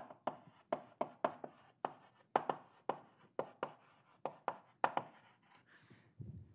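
Chalk writing on a blackboard: a quick run of sharp taps and short scrapes, about four a second, as a phrase is written out. The strokes stop near the end.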